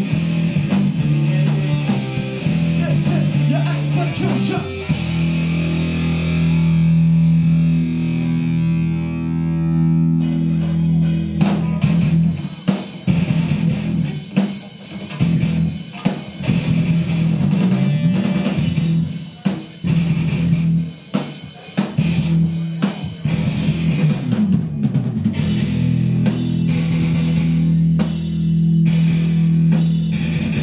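Live heavy rock band playing: distorted electric guitar, bass and drum kit. About five seconds in, a low chord is held while the cymbals drop out; from about twelve seconds on, the band plays stop-start riffs with short breaks between hits.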